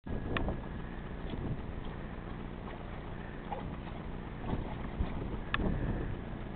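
Wind rumbling on the microphone outdoors, with two brief high-pitched blips, one near the start and one near the end.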